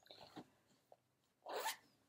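Faint rustling of a fabric zip pouch and a cloth bag being handled on a table: a few soft brushes and clicks early, then a short louder rustle about one and a half seconds in.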